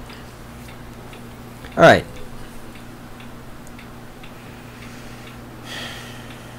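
Faint, regular ticking over a steady low electrical hum in a quiet room.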